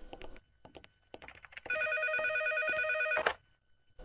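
Office desk telephone ringing: one electronic ring with a rapid warble, about a second and a half long, starting near the middle and cutting off sharply. Faint taps come before it.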